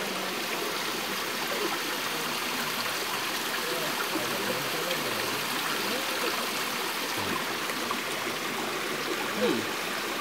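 A small forest stream running over rocks, a steady rushing and trickling of water, with faint voices in the background.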